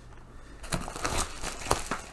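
Rustling and a few light knocks from hands moving things about inside a subscription box, starting just under a second in.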